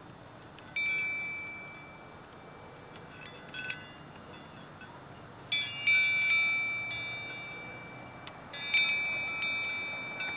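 Wind chimes ringing in irregular clusters of high metallic notes, each cluster fading away slowly, with the busiest, loudest jangle about two-thirds of the way through.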